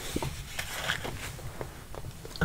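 Faint handling noise: a few light taps and rustles as objects are moved and set down.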